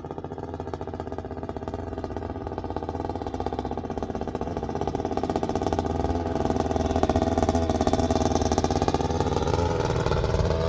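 Paramotor engine and propeller running steadily in flight. The sound grows steadily louder as the paramotor comes in low toward the camera, and its pitch bends near the end as it passes close by.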